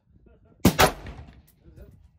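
Two gunshots in quick succession, about a fifth of a second apart, a little over half a second in, each trailing off in a short ringing echo.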